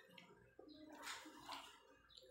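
Faint scrapes and clinks of a metal spoon and fork against a ceramic plate while scooping rice, a few short strokes over near silence.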